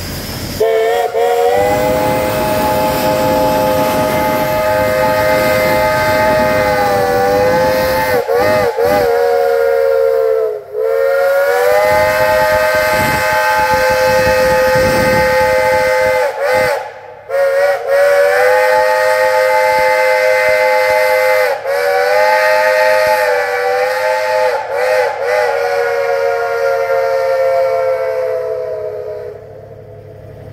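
A steam locomotive's multi-note chime whistle blowing loudly in long, held blasts that last most of the time, broken briefly about ten and seventeen seconds in. It quivers in pitch in short toots around eight, sixteen and twenty-five seconds, and dies away just before the end.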